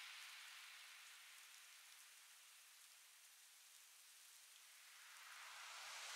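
Faint recorded rain ambience sample, an even hiss of rain, mixed with a white-noise effect that fades away over the first few seconds and swells up again near the end.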